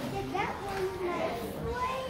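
Indistinct chatter of several children's voices overlapping, with no clear words.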